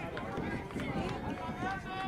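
Faint, overlapping distant voices of players and onlookers calling out, with no single voice standing out.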